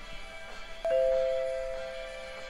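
Sound effect of an on-screen subscribe button: a click, then a two-tone notification bell ding about a second in that rings on and slowly fades, over steady background music.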